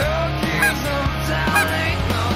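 Canada geese honking, a few short cries about half a second and a second and a half in, over rock music with a steady bass line.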